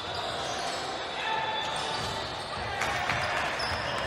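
Live sound of an indoor basketball game: a ball being dribbled and players' voices over steady gym noise.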